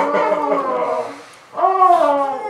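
A voice howling in long, drawn-out notes that slide slowly in pitch. It breaks off for a moment past the middle and comes back loudly near the end.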